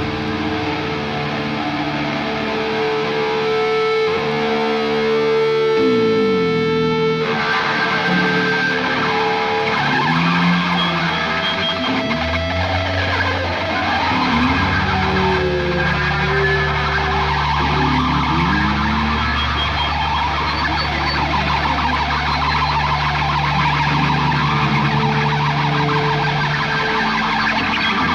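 Live rock band through a loud PA: electric guitars holding and sliding notes, with a long low note held through most of the second half.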